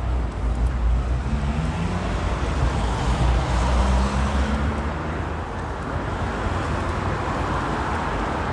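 Road traffic on a city street: cars passing with a steady engine hum and tyre noise over a low rumble, loudest in the first half.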